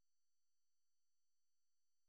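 Near silence: the sound cuts out almost completely, leaving only a very faint steady electronic tone.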